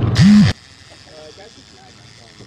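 A man's voice very close to the microphone, loud for about half a second at the start. Then faint voices of people talking over a quiet background.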